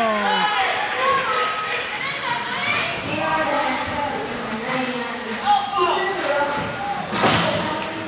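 Ice hockey play in an echoing rink: several voices shouting and calling over one another, a falling shout at the start, and a few sharp knocks from sticks, skates and puck, the loudest about seven seconds in.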